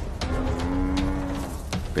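African buffalo bawling: one long, steady call lasting about a second and a half, over a low rumble.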